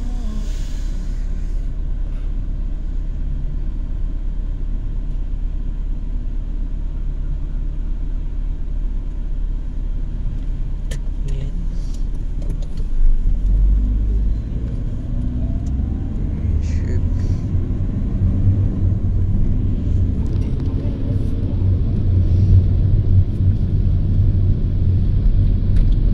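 Car engine and road rumble heard from inside the cabin: a steady low rumble, which about halfway through grows louder as the car speeds up, its engine note climbing in a few rising sweeps.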